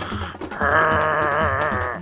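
Cartoon dog's growl, voiced, starting about half a second in and held with a wavering pitch for about a second and a half: a warning growl, the dog guarding the teeth next to it. Background music with a low beat plays underneath.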